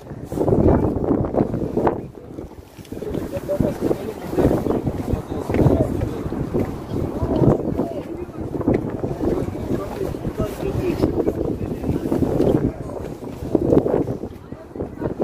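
Wind buffeting a phone microphone as a low, uneven rumble, with indistinct voices of people close by.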